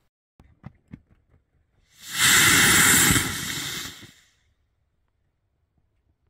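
PVC-cased rocket motor with sugar propellant firing on a ground test stand: a loud rushing burn starts suddenly about two seconds in, holds for just over a second, then dies away over the next second. It burns through cleanly without exploding, a good static test. A few faint clicks come before it.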